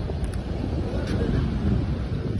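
Wind buffeting a phone's microphone, a steady low rumble over faint outdoor street noise.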